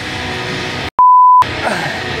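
A loud, steady, high-pitched censor bleep lasting about half a second, about a second in, with the sound cut to silence just before it, over background music. It is the edited-in tone used to mask a swear word.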